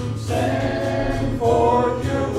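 A congregation singing a hymn in held notes over a steady low accompaniment, rising to a louder, higher note about one and a half seconds in.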